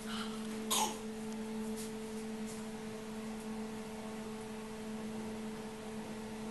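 Steady electrical hum made of a low tone and a higher tone held together, with one short noisy burst about a second in.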